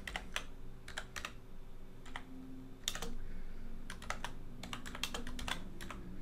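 Typing on a computer keyboard: irregular keystrokes coming singly and in small quick clusters.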